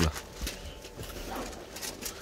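A few soft knocks and rustles of handling, with a low steady hum behind them.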